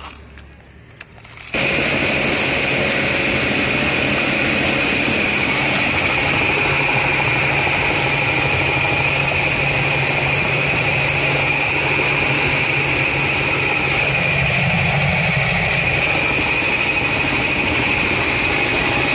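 Flour mill grinding machine starting to be heard about a second and a half in, then running steadily and loudly with a high whine over a low hum, milling dried palmyra sprout pieces into flour.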